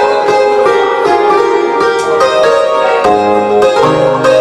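A live band playing an instrumental passage of a Slovak folk-pop song on keyboards: a melody of plucked-sounding notes, with bass notes coming in about three seconds in.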